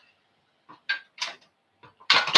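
A few short clicks and light knocks, about five in just over a second, from a gas hob's control knob being turned off and a frying pan being handled on the hob.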